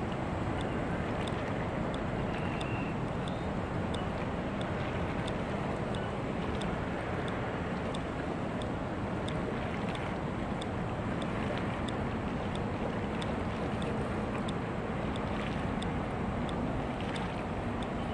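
Steady low hum and rumble of ship and tugboat engines heard from across the harbour, with wind on the microphone. A faint regular ticking runs about twice a second.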